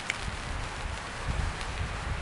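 Steady background of wind rumbling on the microphone and light rain hissing on a tarp overhead.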